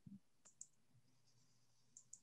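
Near silence with a few faint computer mouse clicks, about half a second in and again near the end.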